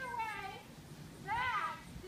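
High-pitched children's voices: a call that slides down at the start, and a short squealing call that rises and falls about halfway through.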